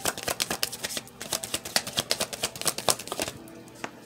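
A tarot deck being shuffled by hand: a rapid run of sharp card clicks and flicks that thins out in the last second.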